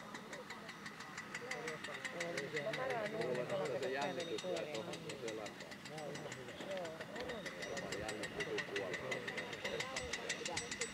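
Indistinct voices of people talking, over an engine running steadily.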